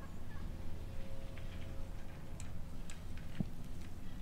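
Quiet outdoor ambience: a steady low rumble, a faint held tone in the first half and a few faint clicks in the second half.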